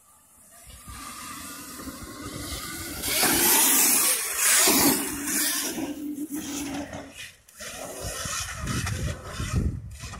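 Dirt bike riding past on a motocross track: the sound builds, is loudest about three to five seconds in with a steady hum under it, then falls away, with a low rumble returning near the end.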